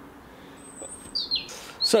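A small bird calling: a thin, high whistle about half a second in, then a few short chirps sliding down in pitch. A man starts speaking near the end.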